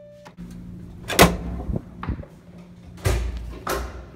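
An electronic keyboard note sounds briefly and cuts off just after the start. Then comes a series of knocks and thumps: the loudest about a second in, a few lighter ones after it, and two more strong ones near the end.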